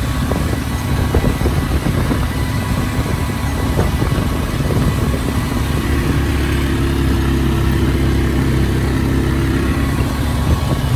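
John Deere 8520 tractor pulling a planter across a field, its diesel engine running steadily under load with a rough low rumble. About six seconds in, this gives way to a steadier, even engine hum from a Polaris ATV riding alongside.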